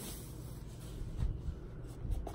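Soft rustling and scraping of a thin protective bag being slid off a ukulele, with faint low handling bumps.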